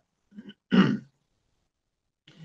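A man briefly clearing his throat once, with a fainter catch in the throat just before it.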